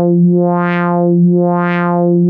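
ASM Hydrasynth holding a single sustained note while a triangle-wave LFO at 1 Hz sweeps its filter cutoff up and down, so the tone opens and closes brightly about once a second. The sweep keeps an even, constant depth: the filter LFO is running without any modulation of its own depth.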